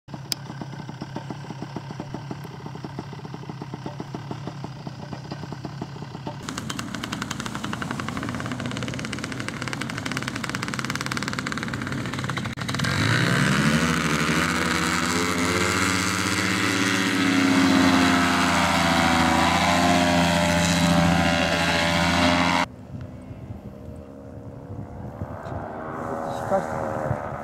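Paramotor engine and propeller running with a rapid pulsing beat, then throttled up about halfway through, the pitch rising into a steady, loud full-power run for the takeoff. Near the end it drops suddenly to a fainter, more distant engine sound.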